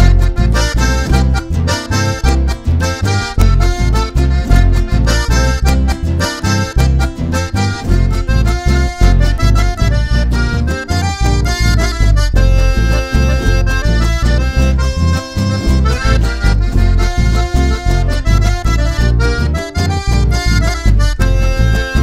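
Instrumental Argentine folk music led by a button accordion, with acoustic guitar and electric bass keeping a steady, bouncing beat.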